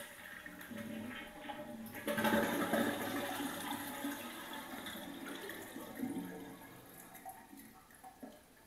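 Toilet flushing: water rushes out of the tank into the bowl, starting suddenly about two seconds in and slowly dying away over the next several seconds as the tank empties before the toilet is taken off.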